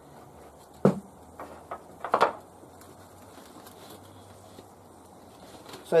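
Stacked stainless-steel sections of a hangi barrel knocking as they are lifted off together: one sharp knock about a second in, two faint taps, then a louder cluster of knocks a little after two seconds.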